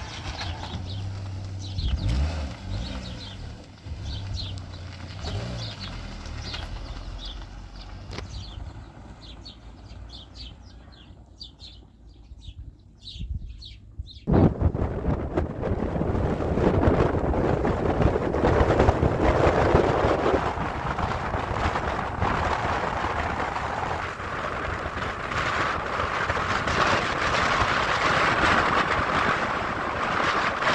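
Small birds chirping in short repeated calls over a low hum, then suddenly, about halfway through, the steady rush of a car's road and wind noise while driving.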